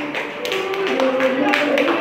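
Voices singing a tune in held notes that step up and down, over a run of sharp hand claps.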